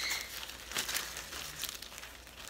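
Irregular crinkling and rustling of a bag of number slips being handled.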